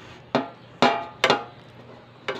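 Three sharp clinks, each with a short ring, of a dish knocking against a round aluminium tray.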